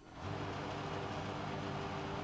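Steady background hum and hiss, like a fan or air-conditioning unit, that fades up a moment in and then holds level.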